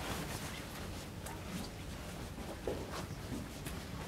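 Soft footsteps and shuffling of a small group walking slowly across a carpeted room, with a few faint knocks and rustles over a low hum of room noise, one knock a little louder about two-thirds of the way through.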